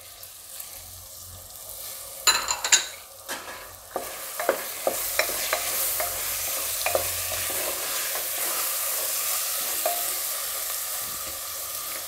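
Spiced vegetables and green pigeon peas frying in a pressure cooker, a spatula scraping and stirring them through the pan. There is a short clatter about two seconds in, and from about four seconds the sizzle builds to a steady hiss under the stirring.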